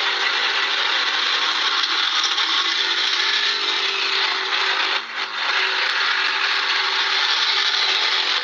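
A loud, steady hiss, like static or rushing air, with no speech over it.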